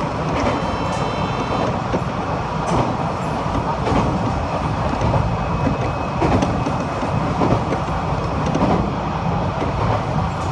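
Passenger train running at speed, heard from inside the car: a steady rumble of wheels on rail with occasional short clicks every second or two. A brief high tone sounds about half a second in.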